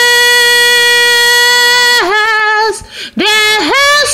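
A woman singing unaccompanied in Spanish, holding one long, steady note for about two seconds, then a shorter note. After a brief break she starts a new phrase with sliding pitch.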